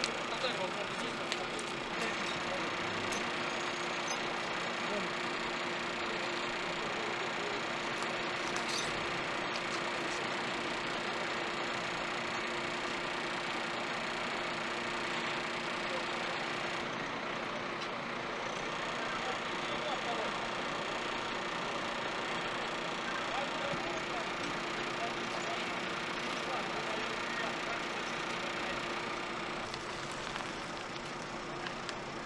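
Steady drone of an idling heavy truck engine, likely the fire ladder truck, over street noise.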